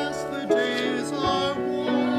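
Singers rehearsing a musical-theatre number, their voices holding notes with vibrato over sustained accompaniment.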